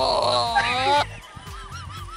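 A goat's long, loud bleat, wavering in pitch like an angry drunk's yell, that stops about a second in; quieter, fainter calls follow.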